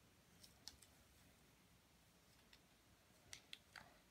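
Near silence with a few faint, sharp clicks of small plastic pen parts being handled: two about half a second in, one midway, and a quick cluster near the end.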